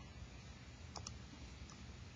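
Faint clicks of TI-84 Plus graphing calculator keys being pressed, two in quick succession about a second in and a softer one shortly after.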